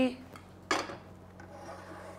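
A glass baking dish of flour-dusted chicken pieces set down on a hard surface: one sharp clink a little under a second in, ringing briefly.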